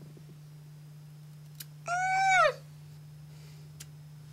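Scissors snipping through mustache hair, two faint clicks. Between them, about two seconds in, a short high-pitched wail holds its pitch and then falls away at the end.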